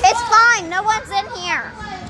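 A young girl's high-pitched voice, rising and falling in a drawn-out call or squeal about a second and a half long.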